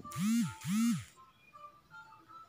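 Two identical electronic sound-effect tones in quick succession, each about half a second long and rising then falling in pitch, over soft background music.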